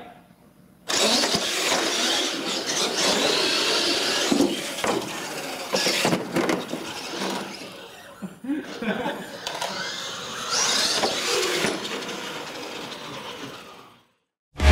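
Radio-controlled monster trucks launching and racing down the lanes, motors whining up and down in pitch, with sharp knocks from the trucks hitting the ramps. The sound starts suddenly just under a second in and fades away near the end.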